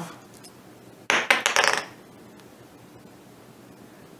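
A short metallic clatter about a second in, as a small steel hand tool is set down on the workbench. Faint ticks of handling follow.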